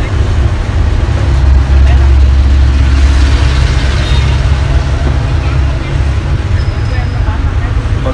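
Low rumble of road traffic passing close by, swelling about two seconds in and easing off after about four seconds as a vehicle goes past.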